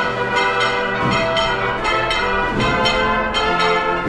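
Procession band playing a march: sustained brass notes changing in steps, with bright bell-like ringing tones over regular percussion strokes about twice a second.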